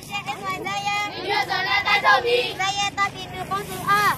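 A group of women's and children's voices chanting protest slogans in unison while marching, in a sing-song rhythm.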